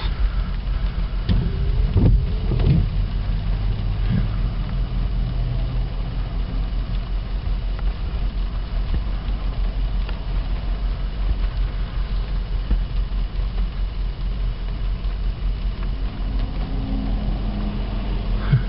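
Car running, heard from inside the cabin as a steady low rumble, with a few knocks in the first few seconds.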